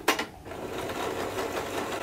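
Small white portable electric sewing machine stitching through thick tapestry fabric: a sharp click right at the start, then after a brief pause it runs at a steady speed.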